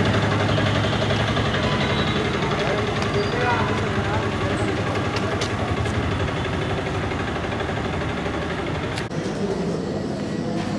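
People's voices talking in the background over a steady low engine-like hum, with an abrupt change in the sound about nine seconds in.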